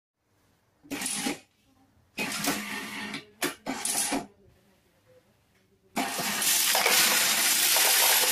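Electric coin sorter starting up about six seconds in, with a steady loud clatter of coins running through it and dropping into its sorting tubes. Before that come a few short bursts of sound.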